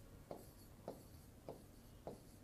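Near silence with three faint, short taps about half a second apart: a pen tapping on an interactive whiteboard screen while numbers are written.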